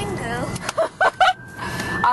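Short bursts of voice over the low rumble of a moving car, with a thin steady high-pitched tone held underneath; the rumble drops away for about a second in the middle.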